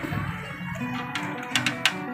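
Electronic game music playing from a claw machine, steady held notes, with a few sharp clicks in the second half.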